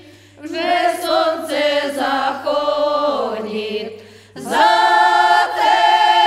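A group of eight older women singing a Ukrainian traditional folk song a cappella in several voice parts. A phrase ends with the voices sliding down in pitch, there is a brief breath pause, and then all voices come back in loudly on the next phrase about four and a half seconds in.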